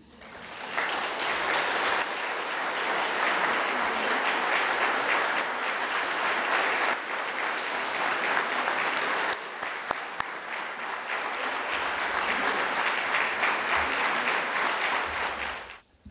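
Audience applauding. The clapping builds over the first second, holds steady and stops just before the end.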